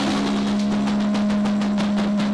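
Punk rock band playing: a held chord rings on under a quick, even run of hits at about seven or eight a second.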